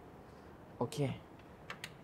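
A few light, sharp clicks of small fittings being handled in a car's open luggage compartment, two of them close together near the end.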